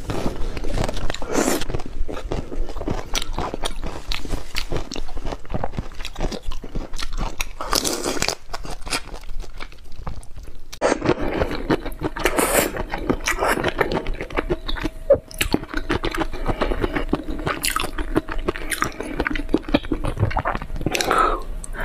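Close-miked chewing and crunching of whole raw shrimp, with many short crisp crunches in quick succession as the shell-on shrimp are bitten and chewed.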